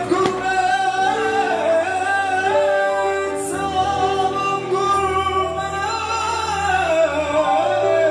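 A man singing into a microphone over instrumental backing, in long held notes that waver and bend in pitch.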